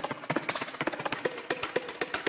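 Preview of Output Arcade's 'Inorganic' percussion loop, a hi-hat substitute: a fast, busy rhythm of dry clicks and paddle-like taps, with short pitched knocks running through it.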